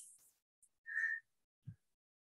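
Near silence with a faint click, then a short, high whistle-like tone about a second in, followed by a brief low thump.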